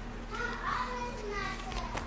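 A child's voice talking faintly in the background, high-pitched and wavering, over a steady low hum.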